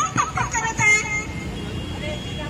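A raised voice calling out briefly during the first second, then steady city street traffic noise.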